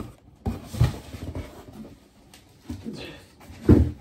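Cardboard boxes being handled: a few scattered knocks and rustles, ending in a louder low thump as the boxed mirror is set down or bumped against the carton.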